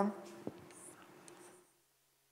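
Chalk on a blackboard: a tap about half a second in, then faint scratching that stops about one and a half seconds in.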